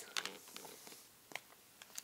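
A few faint, short clicks, about three, over quiet room tone.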